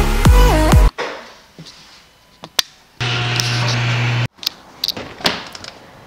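Electronic dance music that stops about a second in. Later, a loud steady low hum for about a second and a half cuts off abruptly, and a few light clicks follow.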